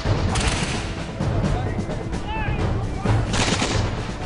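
Volleys of flintlock musket fire in ragged bursts, the loudest just after three seconds in, over a music score.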